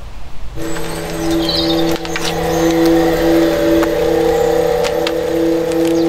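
Intro sound effect for a logo animation: after a noisy first half-second, a steady hum of several held low tones starts, one of them pulsing evenly, over a hiss with scattered clicks.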